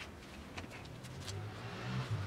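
Synthetic lifting straps being handled and pulled around a rock planting: scattered light clicks and rustling, with a rougher rubbing rumble swelling near the end as the webbing is drawn tight.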